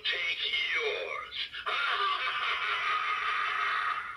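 Talking pumpkin-skull door-knocker Halloween prop playing its recorded spooky voice: a short spoken bit, then from under two seconds in a long drawn-out sinister laugh that fades just after the end.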